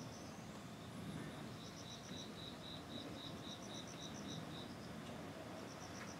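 Faint outdoor ambience with a high, rapidly repeated chirping call, about six chirps a second, in a run through the middle and again briefly near the end.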